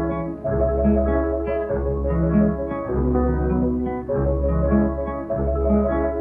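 Instrumental introduction of a 1932 jazz band recording, before the vocal: long bass notes of about a second each under held chords from the band. The sound is dull and thin, with no high treble, as on an early-1930s record.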